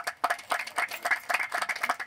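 A small audience applauding, many separate hand claps in a quick, irregular patter.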